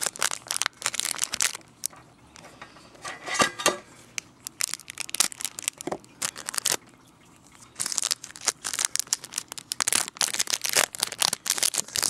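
Clear plastic wrapping being crinkled and torn off a trading card tin, in bursts of crackling with short quiet pauses between them.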